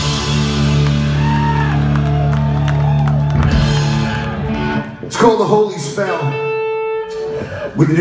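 Live punk rock band holding a final chord on electric guitars and bass, which cuts off a little after three seconds. Voices and a held single note follow.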